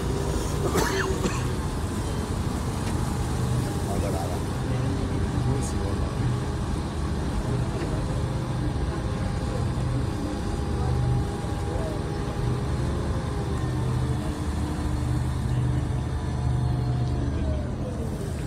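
Steady low rumble of a river shuttle boat's engine underway, swelling and easing every second or two, under a haze of wind and water noise.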